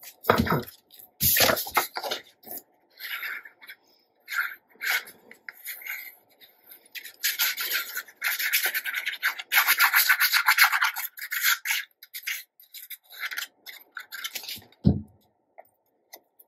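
Paper being handled and rubbed flat on a cutting mat, with a dense run of scraping about halfway through as the tip of a liquid-glue bottle is drawn across the back of a paper panel. A soft thump comes near the end as the panel is pressed down.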